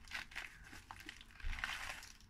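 A plastic bubble-wrap mailer crinkling and rustling as a hand rummages inside it, louder in the second half.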